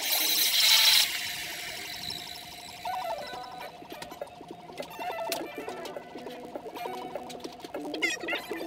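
Background music with a melodic line, opening with a loud bright burst of hiss in the first second.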